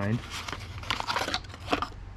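A small cardboard box and its paper packing rustling and crinkling in an irregular run as a new supercharger coupler is pulled out of it by hand.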